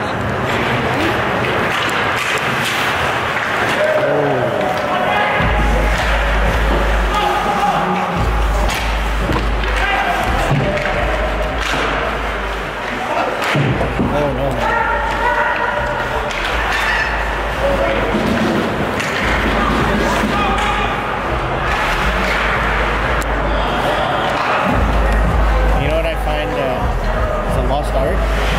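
Ice hockey play in an indoor rink: thuds and slams of the puck and players against the boards, with voices calling out over it.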